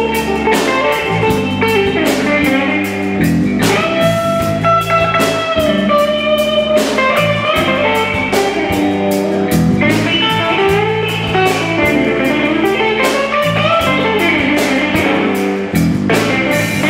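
Live blues band playing an instrumental passage: an electric guitar lead with bent, gliding notes over electric bass and a steady drum-kit beat.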